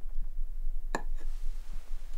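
Foley for a dropped tobacco pipe: a small wooden piece knocked down onto wooden floorboards, giving one sharp clack about a second in with a short ring after it. A low steady hum runs underneath.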